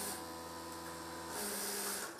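A steady hum of several tones for the first second and a half, then a JACK computerized industrial sewing machine starts a stitching run near the end.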